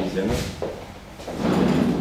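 A man speaking Tunisian Arabic, with a brief sharp knock or clatter about a third of a second in.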